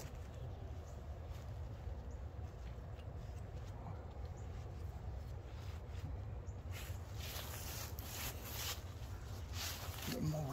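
Rope and climbing hardware handled against a tree trunk: a few brief rustles and light clicks, most of them in the second half, over a steady low rumble.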